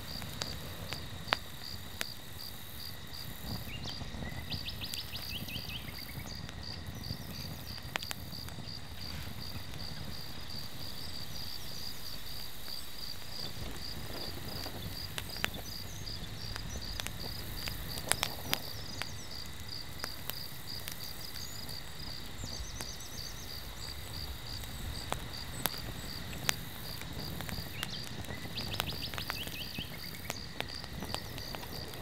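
Insects chirping steadily in a regular high pulsing rhythm, with scattered sharp pops and crackles from burning logs in a wood fire.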